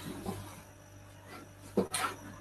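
Mostly quiet room tone, with one short, sharp noise near the end.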